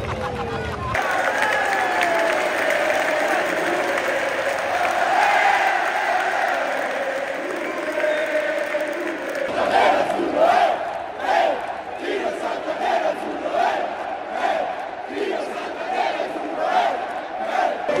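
Stadium crowd of football fans singing and cheering together, celebrating a goal. About halfway through it turns to chanting over steady claps, about one and a half a second.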